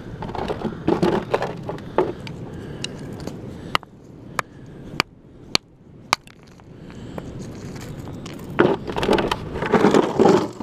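A hammer strikes a rock concretion five times, sharp separate cracks about half a second apart in the middle, splitting it open to look for a fossil crab inside. Stones clatter as they are handled, near the start and again near the end.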